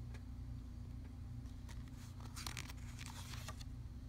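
A picture book's paper page being turned: a short rustle with quick crinkling strokes about two seconds in, over a steady low hum.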